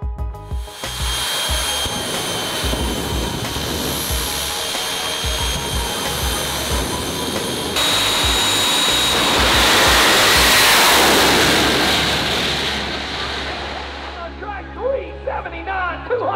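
A jet dragster's jet engine running with a high, steady whine, then swelling into a loud roar about eight seconds in as the car launches and fading away down the track. Background music with a beat plays under it.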